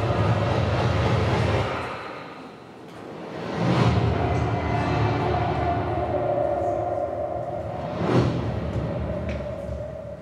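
AI-generated movie-trailer soundtrack played over an auditorium's speakers: trailer music with a heavy low rumble that drops away about two seconds in, then two swelling hits about four and eight seconds in with a held tone between them, fading near the end.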